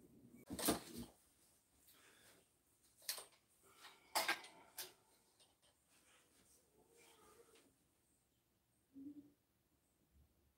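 A few sharp, separate knocks and clicks from handling the door hardware and tools, spaced a second or so apart, with a short low sound near the end.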